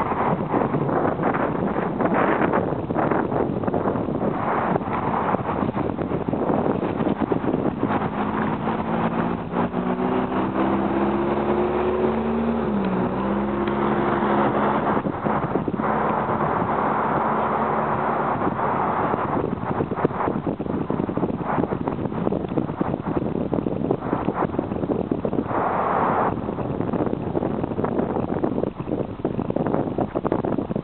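Wind buffeting the microphone throughout, with a vehicle engine heard from about 8 to 19 seconds in, its pitch dipping briefly midway.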